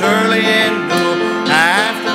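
Church congregation singing a gospel hymn together, with instrumental accompaniment.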